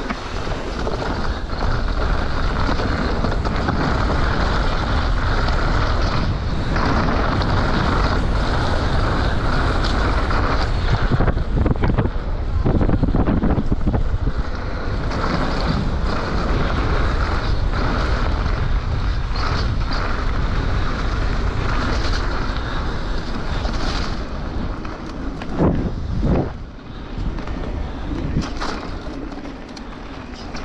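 Wind rushing over the camera microphone and tyres crunching on loose gravel as a mountain bike descends a rough forest track at speed, with the rattle and knock of the bike over stones. A couple of sharper knocks come about four seconds before the end, then the noise eases off.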